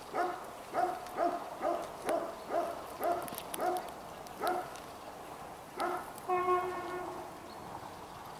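A dog barking repeatedly, about two barks a second for the first few seconds, then after a short pause a couple more barks and one longer, drawn-out bark.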